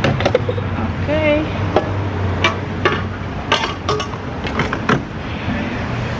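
Gas pump and nozzle being handled: a series of sharp clicks and knocks at uneven intervals over a steady low hum.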